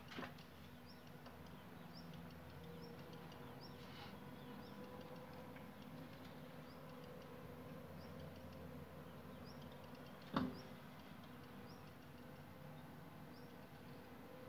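Faint ambience: a low steady hum with a small high chirp repeating about once a second, and a single sharp knock about ten seconds in.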